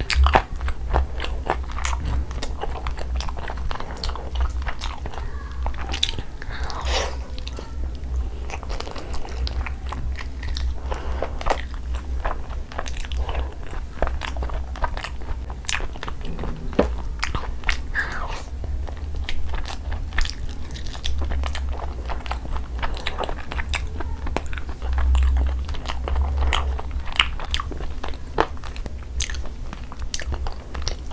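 Close-miked chewing of tandoori chicken: a steady run of wet mouth clicks and smacks.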